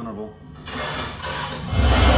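Horror film trailer soundtrack: a swelling rush of noise that builds into a deep low boom near the end.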